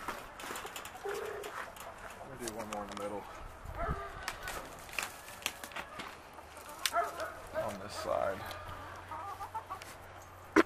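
Backyard chickens clucking in short calls, with scattered sharp clicks throughout.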